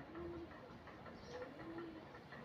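Faint cooing of a dove, heard twice. Each call is a short higher note followed by a longer, lower held note.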